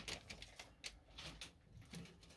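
Faint, irregular clicking and crinkling, several ticks a second, from rats moving about on newspaper cage bedding.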